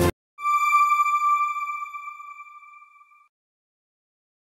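The background music cuts off, then a single bell-like electronic chime pings once and rings out, fading away over about three seconds: a channel-ident sound effect.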